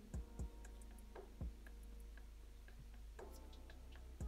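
Quiet room with faint ticking and three soft low thumps in the first second and a half, over a steady low electrical hum.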